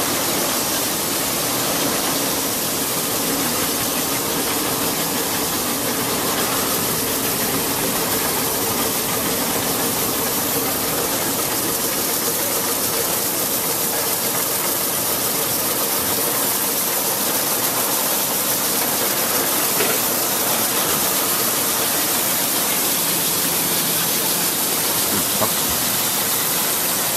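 Rotary glass-bottle washing machine running steadily: water spraying and brush rollers spinning against the bottles, with a faint motor hum underneath.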